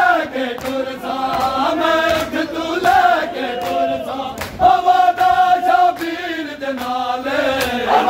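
A group of men chanting a Punjabi noha in chorus. Sharp rhythmic slaps of matam, hands striking bare chests, keep the beat about every three-quarters of a second.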